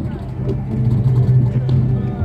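Electronic music from an outdoor loudspeaker, a low held note, played by people touching a sensor-wired birch tree in an interactive music installation. People's voices are mixed in.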